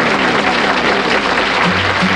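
Studio audience applause, with a downward-gliding pitched tone fading out through it in the first second; low bass notes of the band come in near the end.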